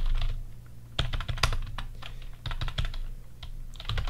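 Typing on a computer keyboard: several short runs of key clicks with brief pauses between them, over a low steady hum.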